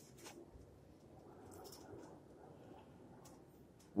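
Near silence with a few faint, light clicks and a soft scrape as an aluminium engine cylinder head is handled and lifted off a table.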